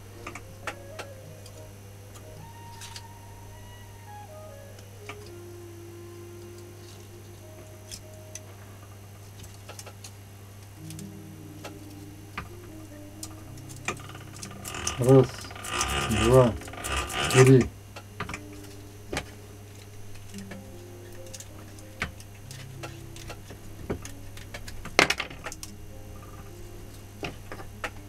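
Small clicks and rubbing of copper winding wire being worked into an angle-grinder armature by hand, over a steady low hum. About fifteen seconds in come three loud pitched sounds close together, and a sharp click near the end.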